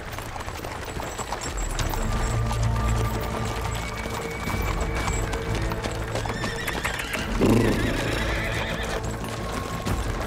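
Horses' hooves clip-clopping on a dirt track under steady background music, with a horse whinnying once about seven and a half seconds in.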